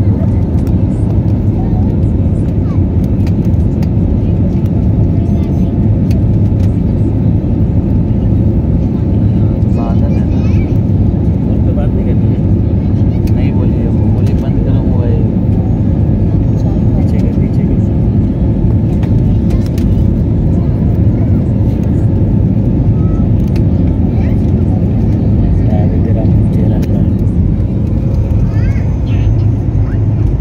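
Steady, loud engine and airflow noise inside a jet airliner's cabin during the climb after takeoff, mostly a deep, even rumble.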